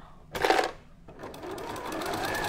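Janome electric sewing machine sewing a zigzag seam, running steadily from about a second in. Just before it starts there is a short, loud burst of noise.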